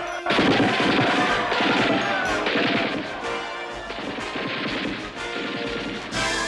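Crashing and smashing of blows on a car's body amid a rioting crowd. It starts suddenly a moment in, is loudest for the first few seconds, then eases off, with music underneath.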